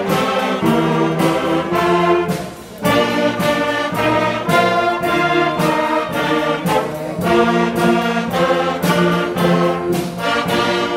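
A youth wind band, flutes and clarinets among them, playing a piece together in sustained notes, with a short break between phrases about two and a half seconds in.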